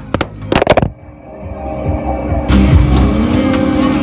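A dropped smartphone knocking and clattering against its own microphone several times in the first second. The sound then goes muffled as if the mic is covered, and about two and a half seconds in it opens up to steady fairground din with music and a machine hum.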